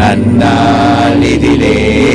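A man singing a slow song into a microphone with long held notes, over instrumental backing.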